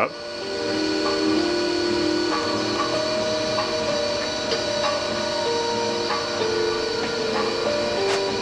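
Maslow CNC's chain-drive motors whining steadily during a rapid move of the sled, over a steady hiss. The whine holds a few steady pitches that shift in steps every second or so.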